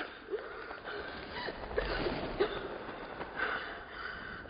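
Muffled underwater sound in a swimming pool: a dull wash of noise with a scatter of short bubbling chirps.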